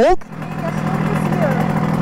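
Simson moped's single-cylinder two-stroke engine idling steadily, with quiet talk over it.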